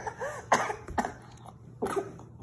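A person coughing: about four short coughs spread over two seconds.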